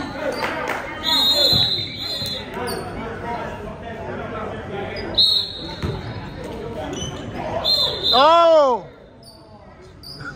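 Basketball shoes squeaking on a hardwood gym floor, several short high squeals, and a basketball bouncing, with voices echoing in a large hall. About 8 seconds in there is one loud drawn-out call that rises and falls in pitch, and then the gym goes quieter.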